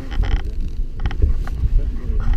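Wind buffeting the microphone on a drifting boat's open deck: a steady low rumble, with two short hissing noises near the start and about a second in.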